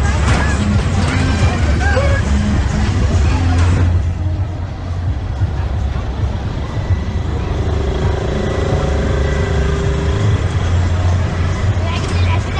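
Carnival midway ambience: voices of passers-by and music over a steady low rumble, busiest in the first few seconds.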